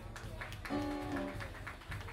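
Live band instruments playing a brief lick, with a few held notes about a second in over light percussive taps.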